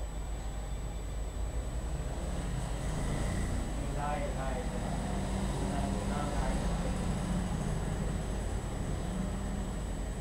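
Road vehicle passing nearby, its engine and tyre noise swelling through the middle and easing off again over a steady low hum. Indistinct voices talk briefly about four and six seconds in.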